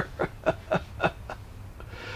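A man chuckling softly: a run of about six short, breathy laughs, roughly four a second, dying away about halfway through.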